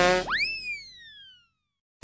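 Cartoon 'boing' sound effect: a buzzy pitched tone breaks into a springy note that jumps up in pitch and then slides slowly down, dying away within about a second and a half. A new short sound effect starts right at the end.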